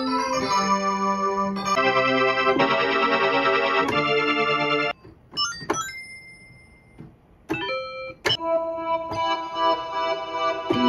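Plogue chipsynth MD, a four-operator 16-bit FM synthesizer emulating the Sega Mega Drive sound chip, playing presets. It holds bright electric-piano-like chords for about five seconds, then a few short blips and rising sweeps, and new sustained notes from about eight seconds in.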